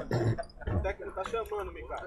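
Quiet background talk of several men's voices, with no one voice close or loud.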